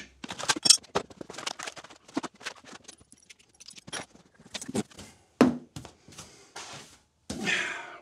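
Tools and workshop clutter being picked up and set down: a run of clatters, knocks and light scrapes, busiest in the first second, then a couple of swishes near the end as the cleared table top is brushed off.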